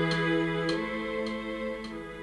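Synthesizer music: held, organ-like keyboard chords over a steady tick just under twice a second, fading gradually.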